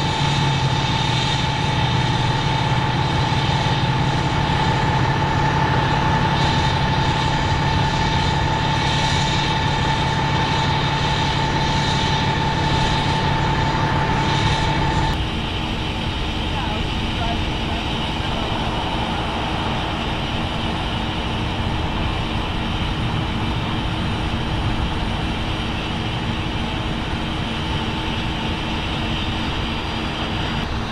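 Steady hum of idling emergency-vehicle engines, with a high steady whine over it in the first half. About halfway through, the sound changes abruptly to a slightly quieter, lower steady hum.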